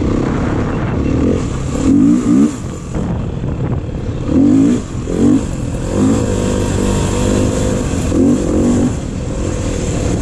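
Beta dirt bike engine being ridden, revving up in short bursts several times and easing off in between as the rider accelerates on a dirt trail.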